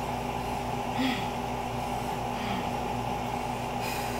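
A woman catching her breath after a set of jumping jacks: a few short, breathy exhalations over a steady background hum.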